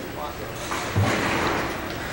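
Bowling-centre background noise: a clattering rumble of lane machinery and low crowd murmur that swells about two-thirds of a second in, with a dull thump about a second in.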